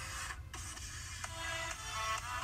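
Intro music: a melody of short notes over a steady bass line, with a brief break about half a second in.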